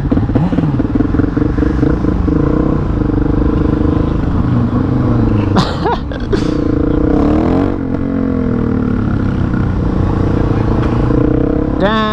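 Single-cylinder engine of a 2016 Suzuki DRZ400SM supermoto running on the move, its pitch rising and falling several times as the throttle is opened and closed.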